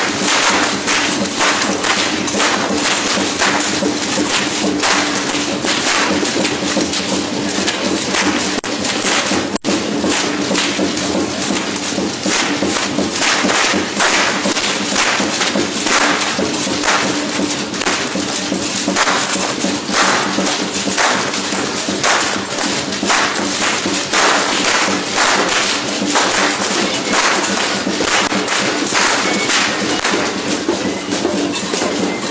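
Rhythmic percussion of a traditional dance troupe: a drum beating steadily with jingling rattles shaken in time over it.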